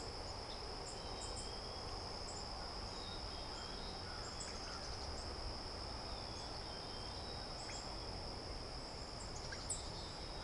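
Steady, high-pitched chorus of crickets trilling without a break, with a few faint short chirps scattered over it.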